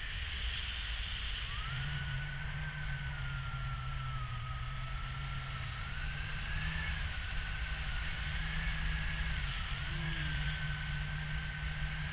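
Wind rushing over the camera microphone in paragliding flight. From about a second and a half in, a thin continuous high tone joins it and wavers slowly up and down in pitch.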